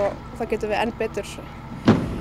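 A woman talking, over a steady low rumble, with one sharp thump just before the end.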